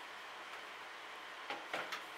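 Quiet steady background hiss of room tone, with a brief soft breath or vocal sound near the end.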